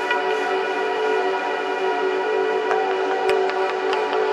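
Ambient background music: a sustained, held chord of steady tones, with a few short, faint high notes struck over it.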